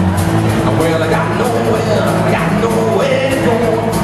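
Live blues-rock band playing: electric guitars and bass over a drum kit with a steady cymbal beat.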